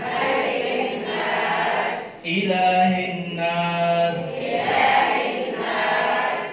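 A group of voices chanting in unison in long drawn-out phrases, with a brief break about two seconds in.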